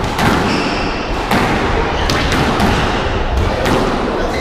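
Squash rally: about five sharp hits as the ball is struck by rackets and bounces off the court walls, with short squeaks of shoes on the wooden floor in between.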